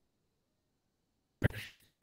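Near silence, then one brief, sharp breath noise from a person about one and a half seconds in.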